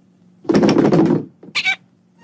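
Donald Duck's raspy quacking voice: a loud grumbling squawk about half a second in, then a short higher squawk.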